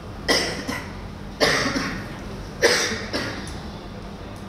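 A person coughing three times, about a second apart, each cough fading in the room's echo.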